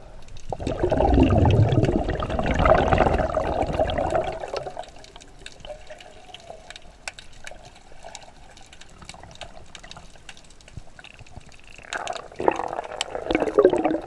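Water sloshing and bubbling around an underwater camera during snorkeling, in two loud spells: one from about half a second in to nearly five seconds, another near the end. Faint clicks run through the quieter stretch between them.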